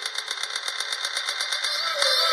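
Electronic trance track in a build-up: a fast, even percussion roll of about ten hits a second over sustained synth tones, getting steadily louder.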